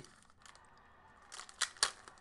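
Trading card pack wrapper being torn open by hand: after a quiet first second, a few short, sharp crinkles and rips near the end as the wrapper gives way.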